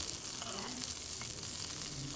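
Ixora (kepula) flowers with cumin and garlic frying in a small pan, a steady sizzle with a spoon stirring through them. They are being fried until their raw smell goes.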